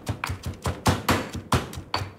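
Stone pestle pounding chillies and shallots in a stone mortar, a steady run of knocks about three to four a second, working them into a coarse spice paste.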